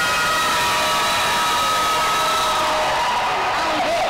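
A girl's voice holding one long note into a microphone, sliding slightly down in pitch and breaking off just before the end, over a crowd cheering.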